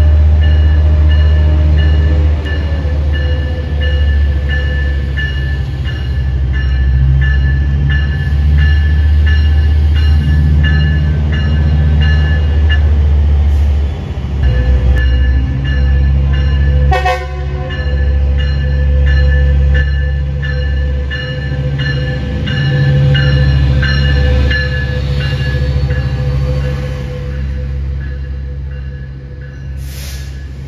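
Metrolink commuter train's diesel locomotive running close by as it arrives and then pulls out, with a heavy low engine rumble. A bell rings steadily over it, and horn blasts sound. A single sharp clank comes about halfway through, and the sound eases off near the end as the passenger cars roll past.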